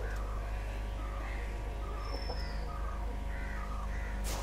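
Steady low hum with faint, scattered bird calls over it, and one brief high whistle about halfway through.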